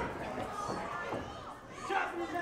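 Small crowd of spectators chattering in a hall, with children's voices among them.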